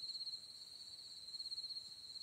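A cricket's fast, steady, high-pitched trill, faint and unbroken.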